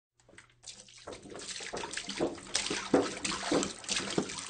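Water pouring from a jug. It starts faintly and builds up about a second in into a steady pour with uneven surges.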